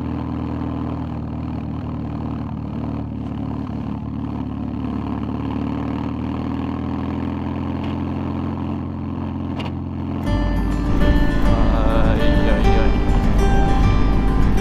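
BMW R1100GS boxer-twin engine running at a steady cruise, an even unchanging note. About ten seconds in, background music comes in and is louder than the engine.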